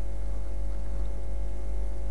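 Steady electrical mains hum picked up in the recording: a low, unchanging drone with a ladder of higher overtones.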